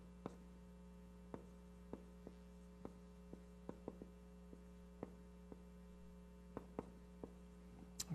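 Faint, irregular clicks of a marker writing on a whiteboard, over a steady electrical hum.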